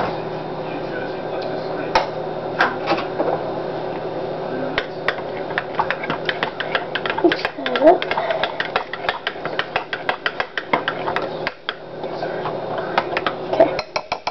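A spoon stirring a mixture in a bowl. A few scattered clinks come first, then from about five seconds in a fast run of clinks and scrapes against the sides of the bowl.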